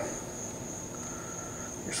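A steady, high-pitched whine runs under the pause, with a faint, brief, lower tone about a second in.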